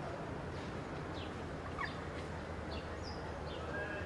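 Small birds chirping outdoors: short, high, downward chirps about twice a second, over a steady low rumble of street ambience.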